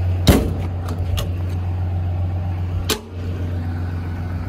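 Steel service-body compartment doors being shut, two sharp metal slams about two and a half seconds apart, the first the louder, over the steady low idle of the truck's 6.7 Cummins diesel.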